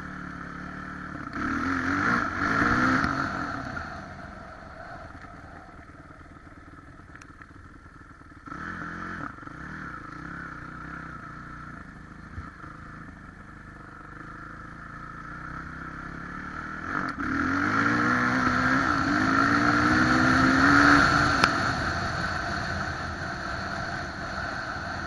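Kawasaki 450 four-stroke single-cylinder dirt bike engine under way. It revs up in rising sweeps about a second in and again over the last third, and runs lower and quieter in between.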